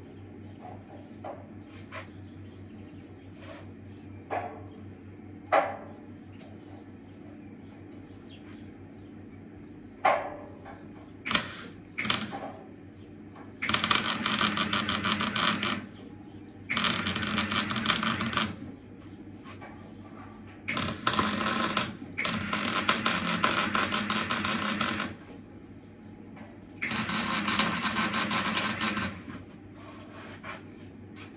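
MIG welding arc on steel, tack-welding stair brackets to a square steel tube: a few sharp clicks in the first ten seconds, then from about eleven seconds two brief arc blips and five runs of steady crackling sizzle lasting one to three seconds each. A low hum sits underneath throughout.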